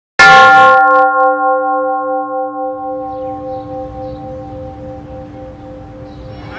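A single deep bell strike that rings on and slowly fades away. Faint background noise comes up under the fading ring about halfway through.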